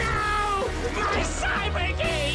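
Action-show soundtrack: a music score with electronic sci-fi sound effects laid over it. A falling whine comes at the start and wavering, warbling tones come near the end.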